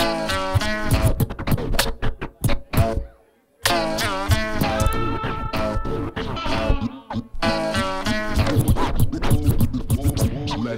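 Turntable scratching over a beat: records pushed back and forth under the needle give fast sliding pitch sweeps, the sound breaking off briefly about three seconds in and then picking up again.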